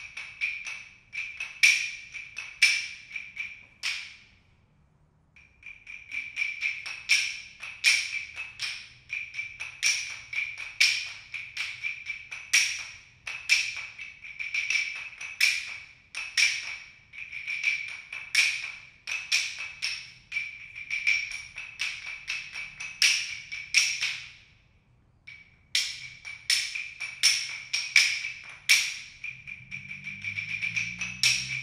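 Claves struck in fast rhythmic patterns, each stroke a sharp click with a bright ring at one high pitch. The playing stops briefly twice, about four seconds and about twenty-five seconds in.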